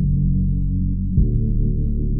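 Instrumental intro of a hip-hop beat: low, sustained synth notes over deep bass, with a heavy bass hit about a second in.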